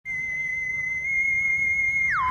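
A single steady, high-pitched whistle-like tone that starts abruptly and is held unbroken at one pitch.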